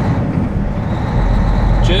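Semi truck's diesel engine heard from inside the cab as the truck is put in gear and pulls away, a low rumble that grows louder about a second in as it takes up the load.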